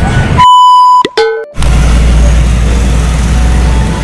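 Edited-in sound effects: a loud, steady, high beep about half a second long, then a short cartoon-like boing with quick pitch glides, both over dead silence. After that, steady background noise with a low rumble returns.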